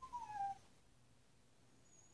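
A puppy whining once: a single high whine that slides down in pitch, lasting about half a second at the start.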